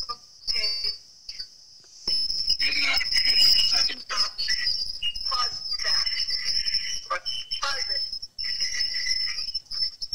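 Garbled, indistinct voices coming through a video-call line over a steady high-pitched whine, the sound of a doubled audio feed.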